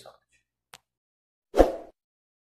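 A single sudden loud pop about one and a half seconds in, fading quickly, after the tail of a man's spoken 'so much'.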